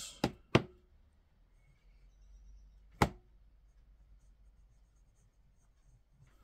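Nahvalur Schuylkill fountain pen's double-broad steel nib writing upside down on notebook paper, quietly and smoothly. Three sharp clicks punctuate it: two in the first second and a louder one about three seconds in.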